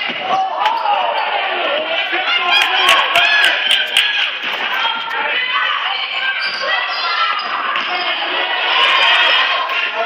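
Basketball bouncing on a hardwood gym floor, several sharp bounces about two to four seconds in, under indistinct voices of players and spectators.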